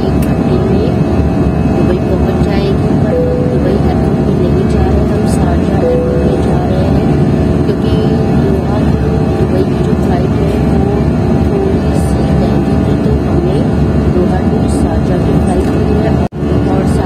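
Steady low roar of an airliner cabin in flight, the engine and airflow noise heard from a passenger seat.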